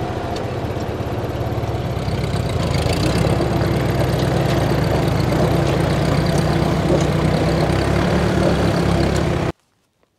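A 1948 Ford 8N tractor's engine and a Honda Foreman Rubicon 500 four-wheeler's engine running together under load in a chain tug-of-war, as the tractor drags the four-wheeler backward. The engine noise grows louder two to three seconds in and cuts off suddenly near the end.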